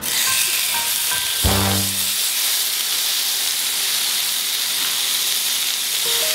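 Marinated bulgogi beef and onion sizzling steadily in hot olive oil in a nonstick frying pan as it is laid in with tongs.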